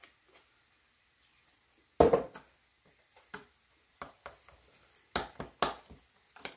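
Spoon, glass jars and a small syrup bottle clinking and knocking on a kitchen counter: one loud knock about two seconds in, scattered light clinks, and two sharp clinks near the end.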